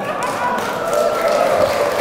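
Audience laughing and clapping: a dense mix of voices and hand claps.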